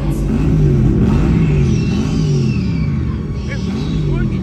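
Loud show soundtrack music over an arena sound system, mixed with a low rumbling sound that keeps rising and falling in pitch.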